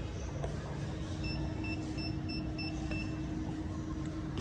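A rapid series of short, high-pitched electronic beeps, about four a second, starting a little over a second in and stopping about a second before the end. A steady low hum runs underneath.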